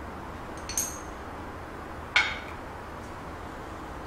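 Two light clinks of kitchen utensils, a spoon and a small glass oil jar being handled and set down by the claypot: one about three-quarters of a second in and a second, sharper one just after two seconds, each ringing briefly.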